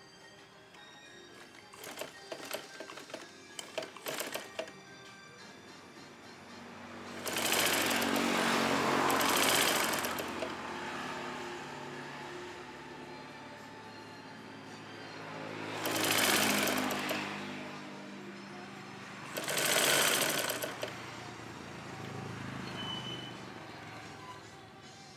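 Sewing machine stitching in three runs: a long one of about three seconds, then two shorter ones, with a series of clicks early on before the first run.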